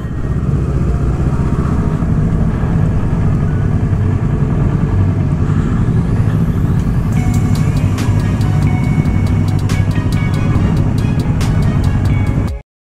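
Motorcycle engine running steadily at low speed as the bike rolls slowly through an archway into a paved square, with background music alongside.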